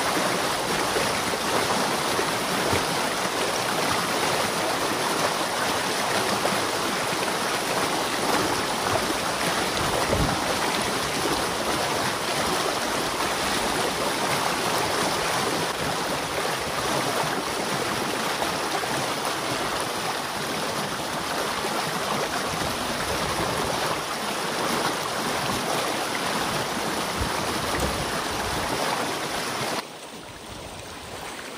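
Muddy water rushing through the breach in a beaver dam as the pond behind it drains, a steady turbulent rush with no let-up.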